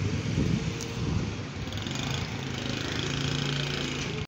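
Street traffic with a vehicle engine running close by: a steady low hum that grows clearer and more even in the second half.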